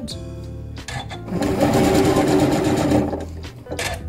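Electric sewing machine stitching along fabric-wrapped piping cord, running fast and steadily for about two seconds in the middle, over light background music.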